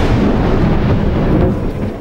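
A loud, thunder-like rumble, a film-trailer sound effect, that holds steady and dies away near the end.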